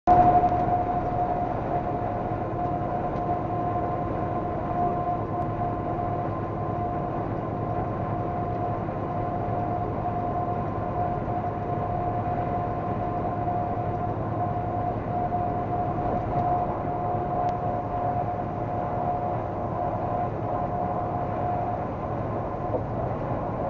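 Steady road and engine noise heard from inside a vehicle driving at highway speed, with a constant whining tone over it.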